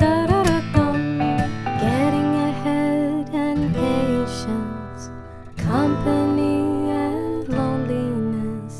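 Acoustic singer-songwriter song, an instrumental passage without lyrics: acoustic guitar with sustained melody notes over held low notes. It eases off about four seconds in, then picks up again shortly after halfway.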